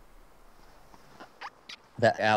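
Quiet low background hiss with a few faint short ticks in the second half.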